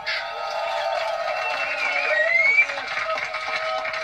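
Male vocal group singing live, with held notes and a voice sliding upward about two seconds in.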